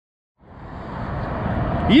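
Highway traffic noise that starts about half a second in and grows steadily louder.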